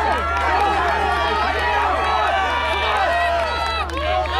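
Many spectators' voices overlapping, calling and shouting encouragement to runners in a track race, with several long held shouts.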